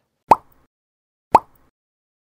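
Two short, sharp pops about a second apart.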